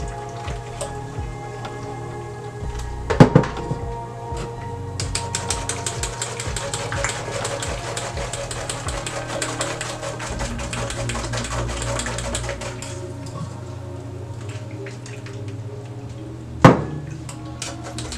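A metal spoon scraping and stirring quickly inside a small fine-mesh metal sieve, working blended June plum and ginger pulp through it, with the fastest scraping in the middle. Two sharp metal knocks ring out, about three seconds in and near the end. Background music plays steadily underneath.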